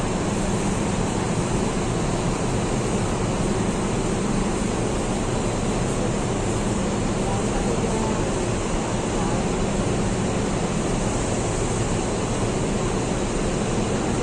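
Double-decker diesel bus idling at close range: a steady engine rumble with a constant low hum, under the continuous noise of an enclosed bus terminus.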